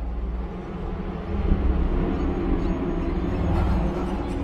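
A deep, steady rumble that swells over the first couple of seconds.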